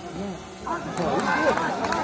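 Crowd of spectators talking and calling out, many voices overlapping into a babble, dipping a little around half a second in.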